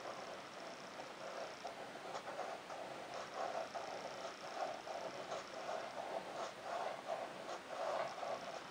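Large Swan No 6 fountain-pen nib scratching faintly across paper as a run of looping figure-of-eight strokes is drawn, a soft scratch with each stroke, a few to the second.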